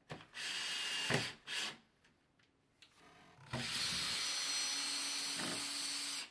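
Cordless drill working into timber at the window reveal: two short bursts, then one steady run of about two and a half seconds near the end.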